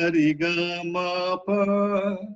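A man's voice singing long held notes of Shankarabharanam raga as swaras: two notes on one pitch with a short break, then a held note a step higher.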